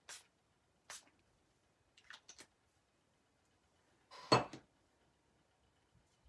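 Hand-held spritzer bottle of ink and isopropyl alcohol sprayed in a few short bursts, about a second apart at first, with a louder burst and knock about four seconds in.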